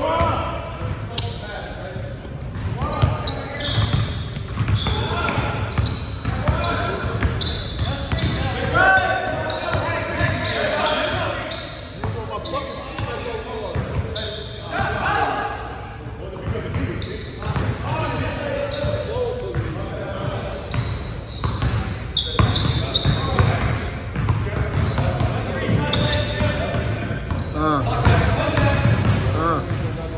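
A basketball bouncing on a hardwood gym floor during a pickup game, with players' indistinct shouts and chatter, echoing in a large gym.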